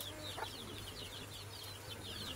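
Faint, rapid high-pitched bird chirping, several short falling chirps a second, over a low steady hum.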